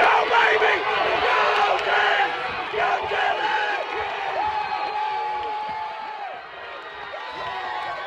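Football crowd in the stands cheering and yelling during a long kickoff return, many voices shouting over one another. One voice holds a long yell about halfway through, and the cheering tapers off near the end.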